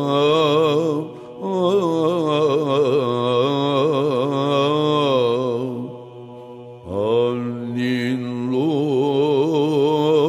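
A male chanter singing melismatic Byzantine chant in the plagal fourth mode, with fast ornaments on drawn-out vowels over a steady low drone. He takes a short breath about a second in and a longer pause around six seconds, then comes back in with a rising glide.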